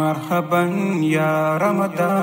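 A man singing a slow, chant-like melody in held notes that step up and down in pitch.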